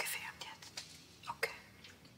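Soft whispering, breathy and hissy, fading out within the first half-second, with a few sharp clicks, the clearest about a second and a half in.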